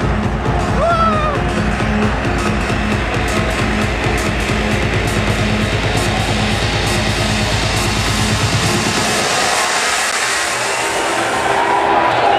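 Electronic dance music played loud over a club sound system, with a steady beat; the bass and beat drop out about eight and a half seconds in, leaving the upper synth parts building on their own.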